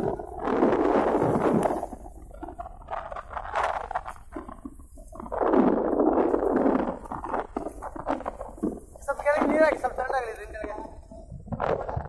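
Raised voices calling out over rough sea, with long surges of wind and water noise: one near the start and one about halfway through. A loud pitched call comes near the end.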